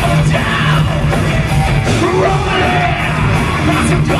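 Live heavy metal band playing: a singer yelling the lyrics into a handheld microphone over distorted electric guitars, bass and drums, with cymbal strokes cutting through.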